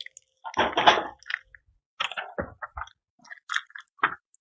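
Packaging rustling and crinkling as small fan hardware is unpacked by hand: one longer rustle about half a second in, then a run of short crinkles and clicks.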